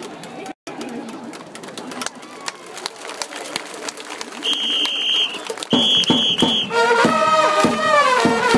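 Crowd chatter in the stands, then a whistle blown in one longer blast and a few short ones about halfway through, signalling the cheering section; near the end the section's brass trumpets strike up a player's cheer song.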